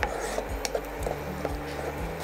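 Wooden spatula stirring and scraping a thick tomato-onion masala in a non-stick pan, with a few light knocks against the pan, over a low steady hum.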